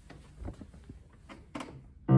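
A few faint knocks and rustles of a person moving and settling at a digital piano, the clearest about half a second in and near the end.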